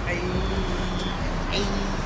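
Steady road-traffic noise with a low rumble of vehicles at a busy curbside, and faint voices of people nearby.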